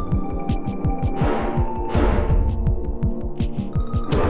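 Background music: a dramatic track with a fast, pulsing low beat under sustained tones and swelling sweeps.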